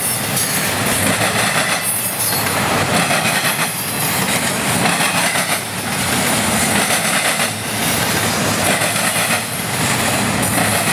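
Double-stack container well cars of a freight train rolling past close by, steel wheels running loudly on the rails. The noise dips briefly about every two seconds as the cars go by.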